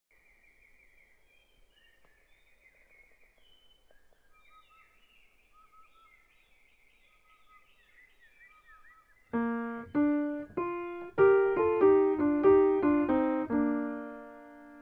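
Faint bird-like chirping for about nine seconds, then a piano-like keyboard comes in loudly with a quick run of about a dozen struck notes that ends on a held, ringing chord.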